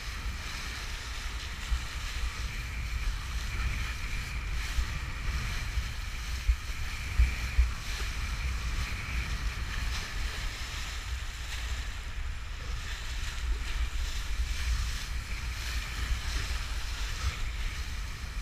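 Kiteboard planing across choppy water: a steady hiss of spray and water rushing past the board, under gusting wind that rumbles on the microphone. A few short thumps stand out through the middle as the board strikes chop.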